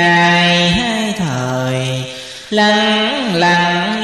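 A single voice chanting Vietnamese Buddhist verse in a slow, drawn-out style, holding long notes and sliding between them. About a second in it drops to a low held note, and a new phrase starts about two and a half seconds in.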